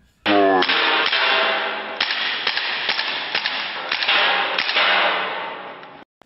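Gel blaster pistol shooting: a string of about ten irregular sharp snaps over voices and background noise. The whole sound fades out near the end.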